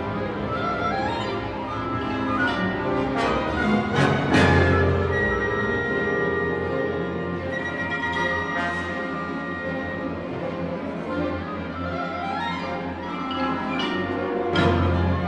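Symphony orchestra playing a contemporary piece, led by bowed strings with rising slides. A sharp full-orchestra accent comes about four seconds in, followed by a held low note under a high sustained tone.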